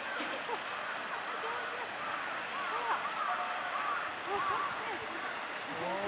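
Indistinct chatter of onlookers, several voices talking at once with no clear words.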